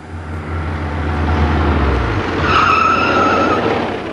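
A car approaches with its engine getting louder, then brakes hard: a high tyre squeal lasting about a second comes in past the middle as it skids to a stop.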